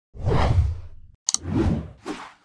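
Whoosh sound effects of an animated logo intro: one long whoosh, then a pair of quick clicks a little past a second in, and a second whoosh right after them.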